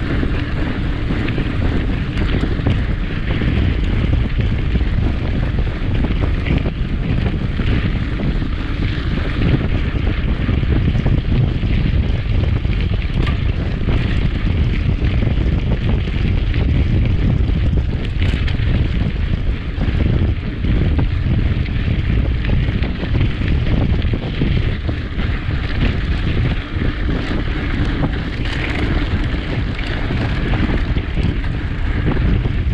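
Steady, loud wind buffeting on a handlebar-mounted camera microphone from a mountain bike ridden fast, mixed with the rumble of tyres rolling over a gravel forest road.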